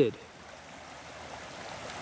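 Creek water flowing strongly, a steady rush; the creek is running high with meltwater from a snowstorm.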